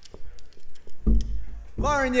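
Light clicks and handling of a harmonica, then near the end a short harmonica note that slides down in pitch.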